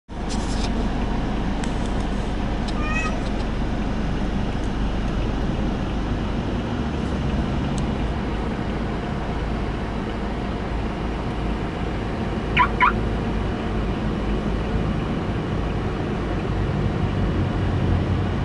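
Steady low rumble of a car's cabin, with two brief high-pitched chirps, one about three seconds in and one near the thirteenth second.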